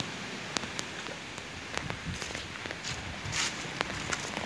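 Handling noise and clothing rustle on a phone's microphone as it is moved against a jacket, a steady rough hiss broken by scattered light clicks.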